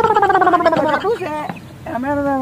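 A high-pitched human voice makes a drawn-out wordless sound that falls in pitch over about a second with a rapid flutter through it. A couple of short vocal sounds follow, and it goes quieter near the end.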